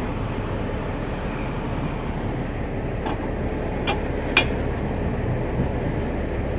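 A heavy vehicle engine idling steadily, with three sharp metallic clanks between about three and four and a half seconds in, the last the loudest, from tow gear being fitted under a transit bus's front bumper.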